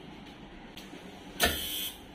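A sudden sharp clunk about one and a half seconds in, dying away within half a second, as a chiropractic hand thrust is delivered to the lower back on a chiropractic table.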